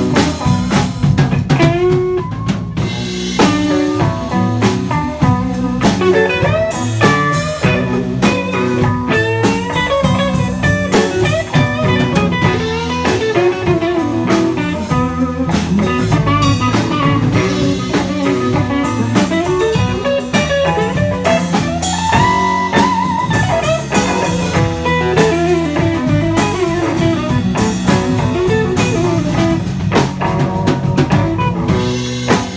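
Live blues band playing an instrumental passage: electric guitars, bass guitar and drum kit, with a lead guitar line bending its notes up and down over a steady groove.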